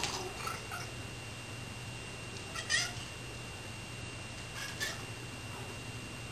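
Domestic cat meowing three times in short calls, the loudest in the middle, typical of cats begging while a can of tuna is opened.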